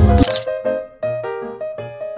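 Loud music and voices cut off about a quarter second in at a camera shutter click. A light keyboard melody of short, separate notes that die away follows.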